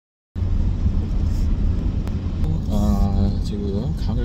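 Steady low rumble of road and wind noise from a car on the move, starting just after a brief silence. A voice comes in near the end.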